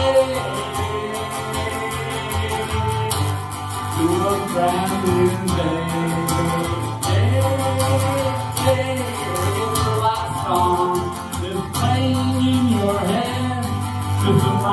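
Acoustic guitar strummed in a steady rhythm, with a man singing along into a microphone.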